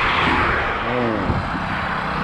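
A small car passes close by on an asphalt highway, its tyre and engine noise loudest at the start and fading as it goes away, with a brief rising and falling engine tone near the middle.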